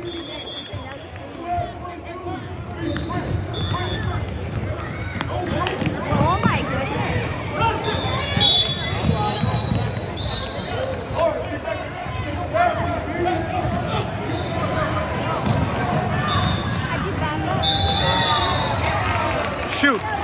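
Echoing gym noise at a youth basketball game: many voices chattering, with a basketball bouncing on the hardwood floor at times and a few short high-pitched tones.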